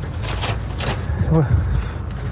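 Thin plastic carrier bag rustling and crinkling as it is handled and pulled out, in several short crackles over a steady low hum, with a brief voice about halfway through.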